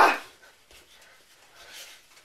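A man's screamed vocal cuts off just after the start. It is followed by faint, breathy sounds from the performer catching his breath, with a slightly louder breath near the end.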